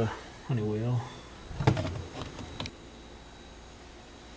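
A short drawn-out vocal 'uh', then a sharp knock near the middle followed by a few lighter clicks of handling.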